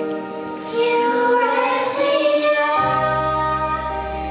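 A child's voice singing a melody over instrumental accompaniment; a low bass part comes in about three-quarters of the way through.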